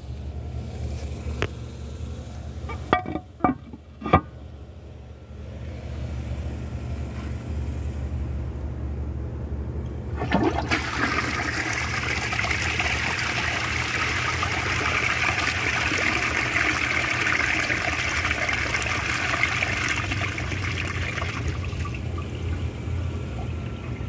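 1997 American Standard Cadet 2 toilet flushing. A few clicks of the trip lever come first, then water rushes into the bowl, loud for about ten seconds before easing off. The flush ends without a siphon gurgle, more like a washdown flush.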